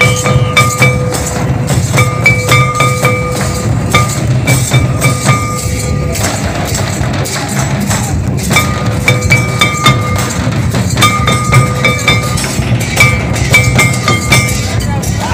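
Loud dance music from a drum troupe: rapid, dense drumbeats with a short high-pitched melodic phrase repeating over them every couple of seconds.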